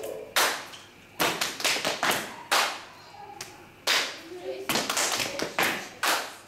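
Hand claps from dancers during a routine: about ten sharp claps at uneven intervals, each ringing briefly in the room.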